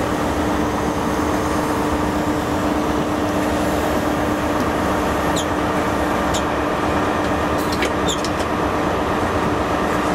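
InterCity 125 High Speed Train slowing to a stop at a station platform, heard at an open coach window: a steady rumble with an even hum. A few short, high squeaks come in the second half as it comes to a stand.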